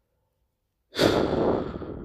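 A man's heavy sigh: a loud breathy exhale close to the microphone, starting about a second in and lasting about a second.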